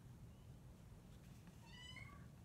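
A kitten giving one short, faint, high-pitched meow near the end, over near-silent room tone.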